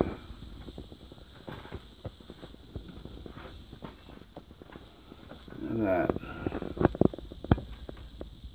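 Scattered faint knocks and clicks of footsteps and handling in a derelict house, with a brief voice about six seconds in, followed by a few sharp knocks.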